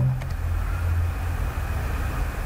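Steady low rumble of background noise with no clear events, in a pause between speech.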